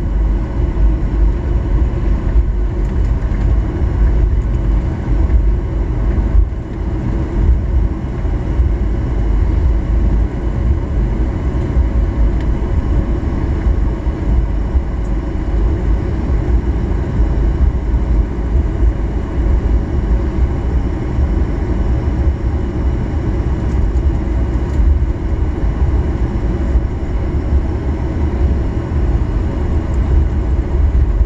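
Cabin noise of a Boeing 737-800 taxiing: a steady low rumble from its CFM56 engines at taxi power and the airframe rolling over the taxiway, with faint steady whine tones on top.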